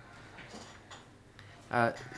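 A pause in a man's speech with faint room noise, broken near the end by a short hesitant "uh".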